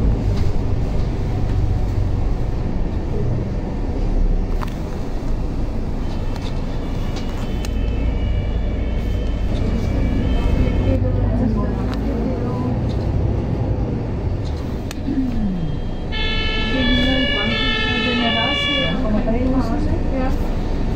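Low engine and road rumble of a city bus heard from inside, with an emergency vehicle's two-tone siren alternating between two pitches, once from about six seconds in and again near the end.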